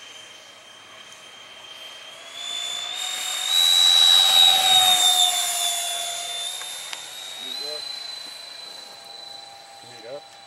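Electric ducted-fan motor of a radio-controlled MiG-29 model jet taking off at high throttle: a steady, high-pitched whine that rises in pitch and grows loud as the jet passes close, about four seconds in. Its pitch then dips slightly and the whine fades as the jet climbs away.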